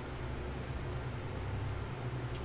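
Room tone: a faint steady hiss with a low hum underneath.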